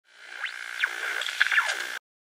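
Short electronic intro sting: a steady synth tone with quick rising and falling pitch sweeps. It fades in and cuts off suddenly.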